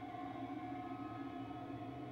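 Quiet, sustained musical drone from a TV drama's score: several steady tones held together as one unchanging chord.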